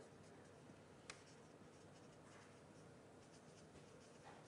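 Near silence with faint scratching and tapping of writing on a board, including one sharp tap about a second in.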